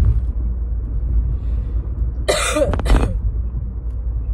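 A single short cough about halfway through, over the steady low rumble of a car driving, heard from inside the cabin.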